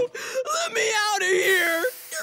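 A cartoon boy's high-pitched voice whimpering and wailing in wordless cries, the pitch wavering up and down. A hiss comes up near the end.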